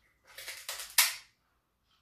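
Hard, crispy deep-fried pig's-head skin crunching and cracking as it is bitten into: a quick run of crackles over about a second, ending in one loud sharp crack.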